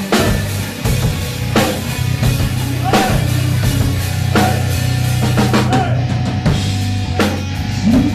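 Live heavy metal band playing, with a drum kit prominent: bass drum and snare hits about every second over a steady, loud low bass line.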